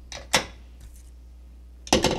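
Sharp clicks of small makeup items being handled on a tabletop: one about a third of a second in and another just before the end, as a brush or compact is put down and the next brush picked up.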